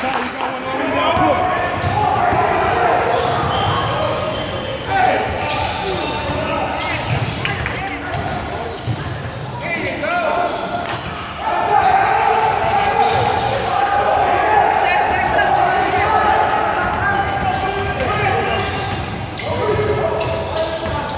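Basketball game on a hardwood court: the ball bouncing, with players and onlookers calling out, echoing in a large gym.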